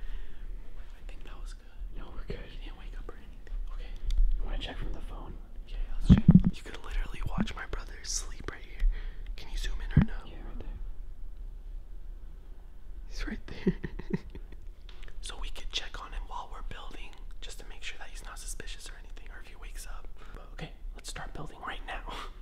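Hushed whispering voices, with a short thump about six seconds in.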